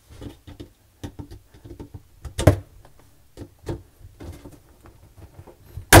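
Irregular knocks and clicks of a dishwasher arm and its metal retaining clip being pried and worked loose at the top of the stainless steel tub. One louder knock comes about halfway through, and a sharp snap near the end as the arm comes off.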